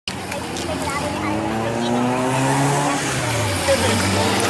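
A car's engine driving past on the road, its pitch rising and then falling away as it goes by.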